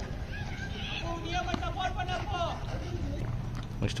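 Players' voices calling out at a distance, with a couple of faint knocks about a second and a half to two seconds in.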